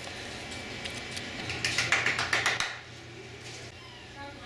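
Lamb hooves clattering on a hard clinic floor: a quick flurry of sharp clicks about a second and a half in, lasting about a second, over a faint room hum.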